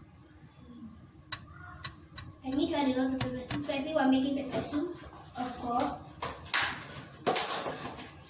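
Spoon and aluminium pots clinking and scraping as spices are spooned into a pot, a few sharp clicks in the quiet first seconds. Low talk begins about two and a half seconds in.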